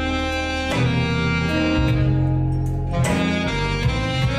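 Alto saxophone playing a melody of long held notes, moving to a new note about every second, over an accompaniment with a steady bass line.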